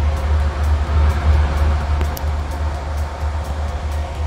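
Tracked Kleemann mobile crusher running at a demolition site: a steady heavy low drone with a faint hum above it and light regular ticking.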